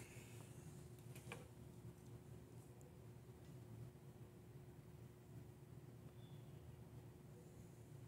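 Near silence: room tone with a faint steady hum and a faint click about a second in.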